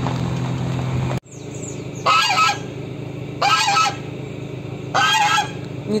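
Steady car engine hum for about the first second, cut off abruptly, then a white domestic goose honking three times, each call about half a second long.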